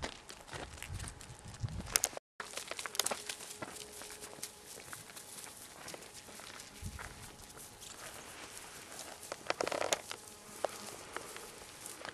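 Irregular crackles and rustles of footsteps moving through dry grass and brush, denser near the end. There is a brief dropout to silence about two seconds in.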